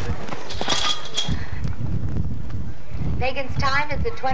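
A horse galloping on soft arena dirt, its hooves thudding in a quick run of knocks and low thumps. A voice comes in about three seconds in.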